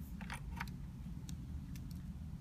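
A USB-A plug being pushed into a laptop's USB port: a few small clicks and scrapes of plastic and metal over a low steady room hum.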